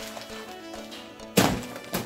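Soft background music, then about one and a half seconds in a single dull thud as a bag of flour is set down on the table on top of other packets.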